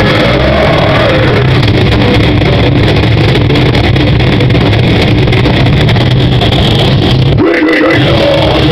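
Metal band playing live, an instrumental passage of heavily distorted guitar, bass and drums, recorded loud and distorted on a digital camera's microphone. The low end cuts out briefly near the end.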